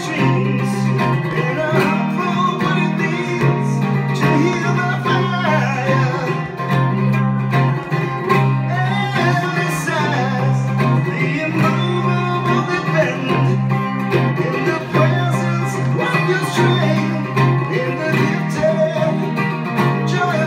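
A man singing live while strumming a steady rhythm on a cigar box guitar.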